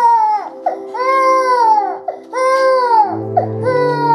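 A person wailing in long, loud cries, each about a second, rising and then falling away, over background music of held low notes that drop to a deeper chord about three seconds in.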